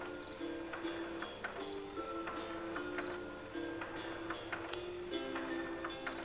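Electronic lullaby tune from a baby swing's built-in sound player, a simple melody of held notes mixed with chirping cricket sounds, with scattered soft clicks.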